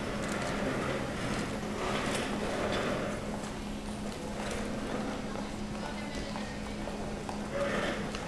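Busy hall ambience: indistinct voices, footsteps and clatter on a hard floor, over a steady low hum.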